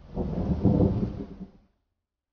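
A deep rumble that swells and dies away over about a second and a half.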